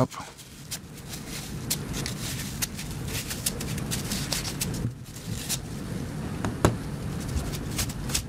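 Small irregular clicks and light scraping as a USB stick's circuit board is cleaned with a tool and a cotton swab, over a steady low background noise.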